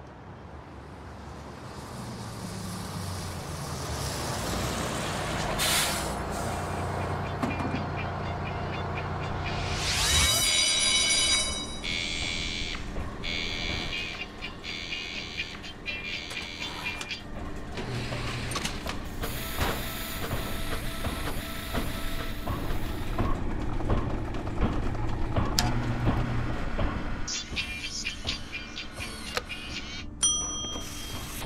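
Sound design for an animated bus: an engine hum growing louder over the first ten seconds, loud hisses about six and ten seconds in, then a run of electronic beeps and tones with mechanical clicks and hum, over music.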